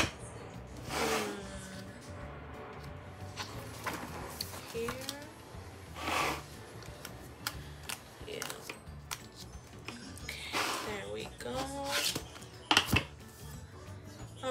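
Paper pages of a disc-bound planner rustling as they are turned and handled, with sharp clicks as a punched page is pressed onto the binding discs. The sharpest click comes right at the start, and a cluster of clicks comes near the end.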